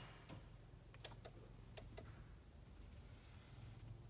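Near silence with a few faint, light clicks in the first two seconds, over a faint low hum.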